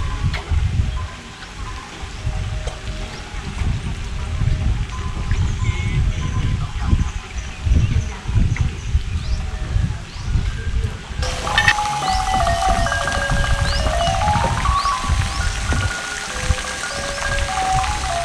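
Irregular low rumble of wind on the microphone, with hands moving in pond water. Background music runs under it and becomes clearer about two-thirds of the way through, with a run of notes stepping up and down.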